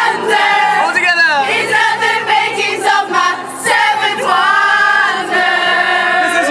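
A group of dancers singing together loudly in chorus, with cheers and a rising whoop about a second in.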